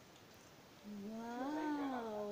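A single drawn-out, voice-like call beginning about a second in, rising and then falling in pitch.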